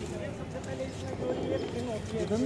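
Indistinct background chatter of several people talking at once, with no single clear speaker.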